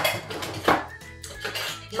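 Small hard objects clattering and knocking as a hand rummages through them, with a sharp knock at the start and another about two-thirds of a second in.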